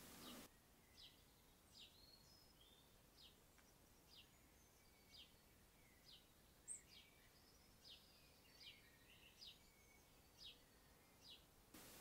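Near silence with a faint bird call: a short, high, falling chirp repeated about once a second, with one sharper, higher note just past halfway.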